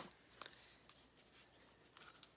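Near silence with faint rustling and a few light clicks of hands handling small cosmetic packaging, the sharpest click right at the start.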